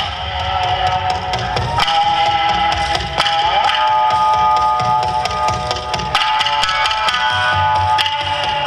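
Loud recorded dance music accompanying a yosakoi-style festival dance performance, with held melodic tones and many sharp percussive clicks through it.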